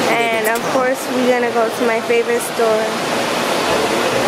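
A person's voice in short phrases for the first three seconds or so, over a steady rushing noise.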